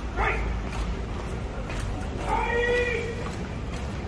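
A man shouting a military drill command: a short cry just after the start, then one long drawn-out, high-pitched word of command about two and a half seconds in.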